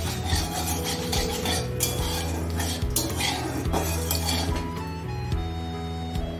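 A long metal spoon scraping and stirring in a steel kadai, with clinks against the pan through the first few seconds, over background music.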